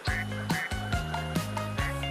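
Background music with a steady beat, held melody notes and a bass line.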